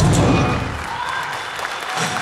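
A concert audience applauding and cheering at the end of a song, while the band's last chord rings out and fades in the first second.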